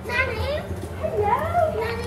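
High-pitched children's voices calling out, their pitch sliding up and down, without clear words.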